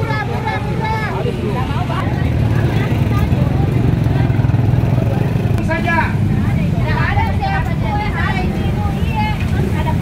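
Busy open-air market ambience: people's voices chattering over a steady low rumble of motor traffic, which grows louder for a few seconds in the middle.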